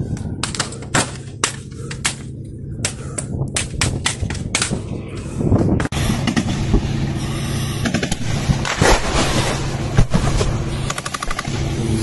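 Gunfire: many sharp shots in quick, irregular bursts for about five seconds. About six seconds in the sound changes abruptly to a dense, steady noise with a few louder cracks in it.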